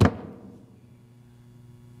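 A single thump of hands slapping down onto a wooden pulpit, with a short room echo dying away over about half a second, leaving only a faint steady hum.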